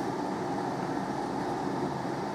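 Steady background rumble and hiss, with no distinct events.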